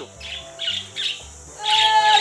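Caged pet budgerigars chirping and squawking in short bursts.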